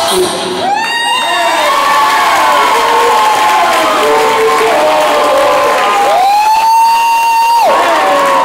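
Audience cheering and screaming, many high voices shrieking and whooping. One long high scream rises and holds for about a second and a half, starting about six seconds in.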